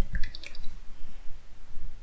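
Fork oil pouring from a bottle into a plastic measuring jug. The sounds are most distinct in the first half second, then fainter.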